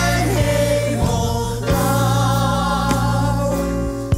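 Stage-musical ensemble singing with orchestral backing, holding long chords that change about a second in and again near the end.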